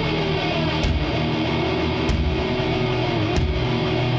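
Heavy metal band playing live: distorted electric guitars with notes sliding in pitch, and a heavy drum-and-cymbal hit about every second and a quarter.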